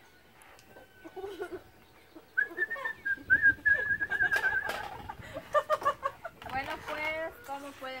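A single high whistled call holds one wavering pitch for about two seconds, then indistinct voices follow.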